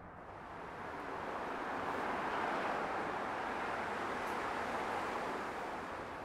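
Steady rushing noise of distant city traffic, swelling in over the first second and easing off slightly near the end.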